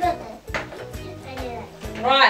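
Background music with a steady beat, with a brief voice at the start and a short click about half a second in, from small plastic toy boxes being handled.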